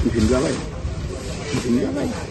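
A man talking, in short stretches, over a steady background hiss.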